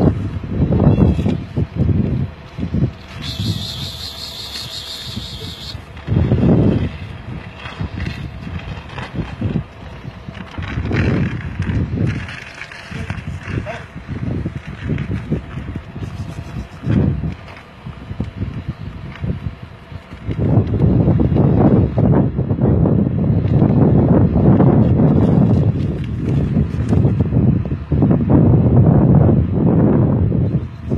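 Wind buffeting the microphone in low gusts, heaviest in the last third, with a brief high hiss about three seconds in.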